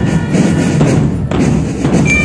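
Military marching drum band playing a march on the move. Mostly drums, with deep bass-drum thumps and rattling strokes throughout.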